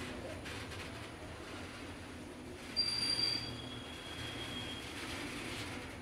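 Loaded BTPN tank wagons of a freight train rolling past with a steady rumble of wheels on rail. About halfway through, the wheels squeal briefly in two high tones, and the lower one lingers for a couple of seconds.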